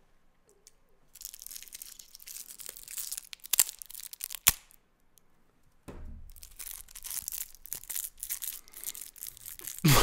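Thin plastic straw wrapper from a juice box crinkling and tearing close to the microphone, with two sharp snaps about three and a half and four and a half seconds in. After a short pause the crinkling starts again.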